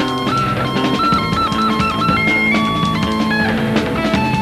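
Live rock band playing: electric guitar lead lines with held and bending notes over a busy, steady drum-kit beat and electric bass.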